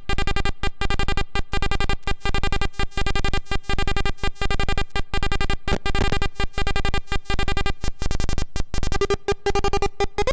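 Rakit Mini-APC (Atari Punk Console) synth kit buzzing a steady square-wave tone rich in overtones, chopped into a repeating stutter of short silences several times a second by gate signals from a Baby-8 step sequencer. The pitch holds steady and dips slightly near the end.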